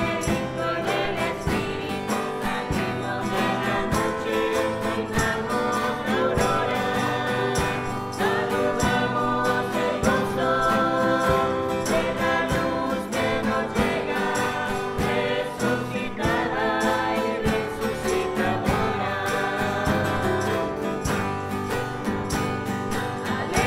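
Church entrance hymn: a group singing with instrumental accompaniment over a steady beat.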